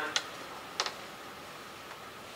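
Two short, sharp clicks about two-thirds of a second apart, over steady room hiss.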